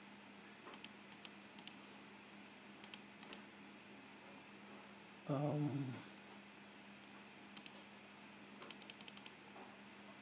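Computer mouse and keyboard clicks, scattered and quiet, with a quick run of several clicks near the end. About halfway through comes a short hummed vocal sound over a faint steady electrical hum.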